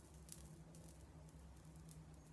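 Near silence: faint, scattered crackles as beard hair is burned off by a high-power blue laser, over a faint low hum.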